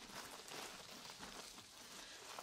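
Faint rustling of a shimmery prom dress's fabric rubbed under the fingertips as it is handled.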